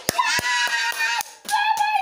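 A child's high-pitched, drawn-out cry held on a steady pitch, once for about a second and again near the end, with a few sharp knocks at the start.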